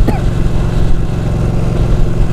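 Ducati 1299 Panigale's 1285 cc Superquadro L-twin running steadily at a cruise, heard from the rider's helmet with wind rush over it.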